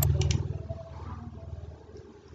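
Low, steady background hum of the recording fading down after the narration, with a couple of faint clicks in the first moment.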